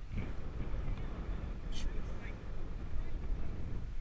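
Wind rumbling on the microphone over choppy water, with a brief high-pitched sound a little before halfway.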